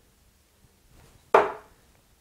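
A 23.5 g tungsten steel-tip dart striking a Mission Samurai II bristle dartboard once, about a second in: a single sharp thud with a short decay.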